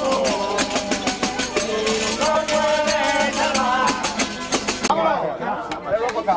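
Traditional Murcian cuadrilla de ánimas music: a sung verse over a quick, steady rattling percussion beat. The percussion stops about five seconds in, leaving crowd voices.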